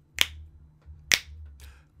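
Two sharp finger snaps about a second apart, keeping a slow beat.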